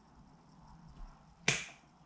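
Pruning scissors snipping through a small lemon tree shoot: one sharp snip about a second and a half in, after a faint click.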